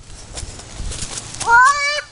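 Rustling of a handheld camera with a few light knocks, then about a second and a half in a young child's high, drawn-out call that rises and then holds.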